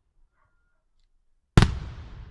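An aerial fireworks shell bursting with a single loud bang about one and a half seconds in, followed by a long rumbling echo that dies away.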